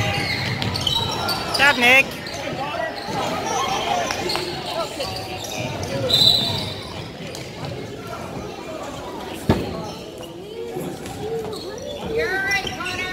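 Basketball being dribbled on a hardwood gym floor during play, amid spectators' voices in an echoing gym, with one sharp knock about nine and a half seconds in.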